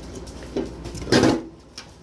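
Tall aluminium drink can being opened by hand: a small click of the tab, then a short loud hiss about a second in.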